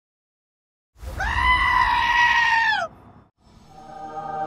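A loud, high-pitched scream-like cry held for about two seconds, rising at the start and dropping off at the end, over a low rumble. Soft music fades in near the end.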